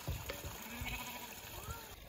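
A farm animal bleating, a short pitched call with a rising end, over a few low thumps near the start.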